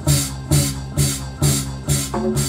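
A bolon, a West African bass harp, plucked over a Korg Pa50 keyboard's house rhythm. The beat is steady, about two pulses a second, with low plucked notes.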